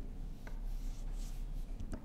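Soft rustling of paper notes handled at a lectern, with a few faint clicks, over a low steady hum.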